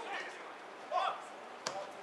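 Football players calling out on the pitch, with one sharp kick of the ball near the end.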